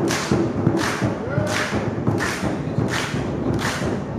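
Tongan drumming: a barrel-shaped skin drum beaten with two sticks in a fast, dense run of strokes. Over it come sharp group hand claps, a little more than one a second, in steady time.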